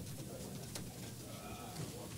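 Faint, indistinct murmur of people talking in a large meeting room, with a few small clicks.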